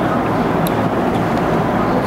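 Steady, fairly loud rushing background noise with a low hum, in a pause between words; no distinct events stand out.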